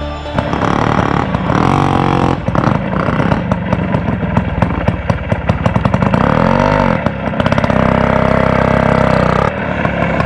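Small motorcycle engine running and being revved: its firing pulses quicken, it revs up and back down once about two-thirds of the way through, then runs steadily until it drops off near the end.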